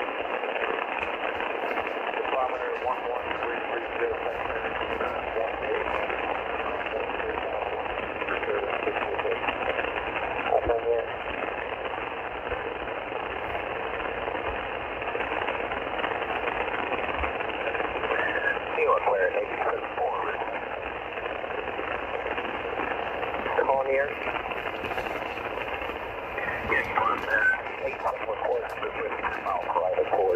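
Icom IC-R30 receiver tuned to 8918 kHz upper sideband on the HF aeronautical band, putting out steady hiss and static. Faint, unreadable voice fragments are buried in the noise, louder now and then near the end.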